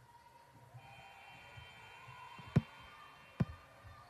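Basketball bouncing twice on a hardwood gym floor, two sharp thuds less than a second apart in the second half, over faint gym background noise.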